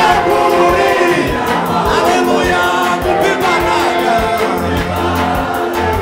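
Male gospel choir singing in Kinyarwanda with a live band and a steady drum beat; a bass line comes in near the end.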